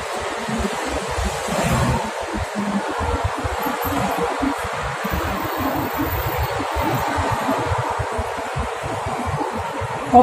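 Steady outdoor street noise: a continuous hiss with an uneven low rumble underneath, with no voices.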